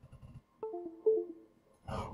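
Short computer chime of a few clean electronic tones stepping down in pitch, lasting under a second: the USB device sound as the robot's Arduino board is plugged in for the sketch upload.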